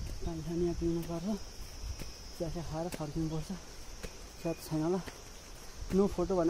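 Insects droning steadily and high-pitched in the woodland, with a man's voice making short wordless phrases, each about a second long, that hold one pitch and rise at the end, four times.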